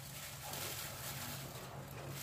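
Faint steady background hiss with a low hum underneath, and no distinct handling sounds.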